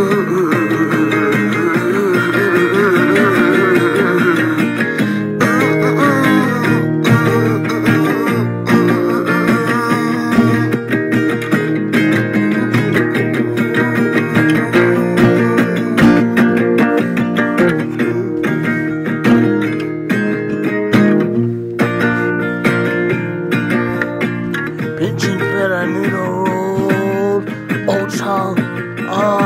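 Acoustic guitar being played, one note after another throughout, with some notes wavering in pitch in the first few seconds.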